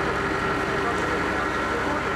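Caterpillar compact track loader's diesel engine running steadily with a steady whine over it while the loader works its bucket.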